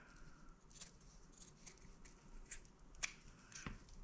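Fabric scissors snipping through the layered seam allowance of a small cotton-and-Insul-Bright appliqué leaf, trimming it down. A series of faint, short snips at an uneven pace.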